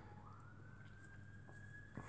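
Faint police siren wailing: its single tone rises about a quarter second in, then holds high.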